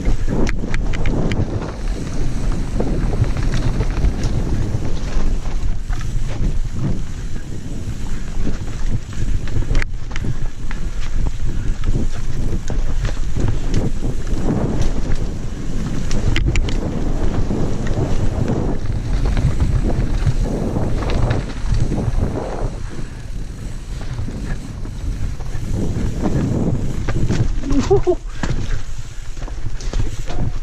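Mountain bike descending a steep, rough trail at speed: wind buffeting the microphone over the rolling of tyres on dirt, with the bike clattering and knocking over roots and rocks. A rider whoops and laughs near the end.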